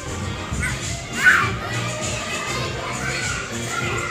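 Crowd of children shouting and playing in a large indoor play hall over background music, with one loud high shriek a little over a second in.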